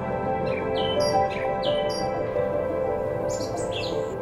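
Short, falling bird chirps repeated several times in the first half, and another quick cluster of chirps near the end, over soft background music of sustained, held tones.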